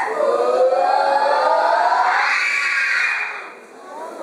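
A school choral speaking group's voices in unison, sliding upward in one long rising glide that turns louder and harsher about two seconds in. The voices then fade to a short pause before resuming near the end.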